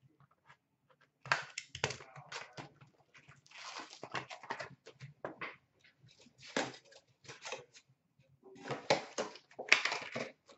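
Wrappers of Upper Deck hockey card packs being torn open and crinkled, with the cards slid out and shuffled in the hands, in short irregular bursts that are loudest near the end.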